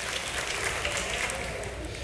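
Congregation applauding steadily in a large church hall.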